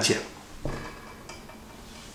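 A short pause in a man's speech, broken by a single sharp click about two-thirds of a second in and a much fainter tick later.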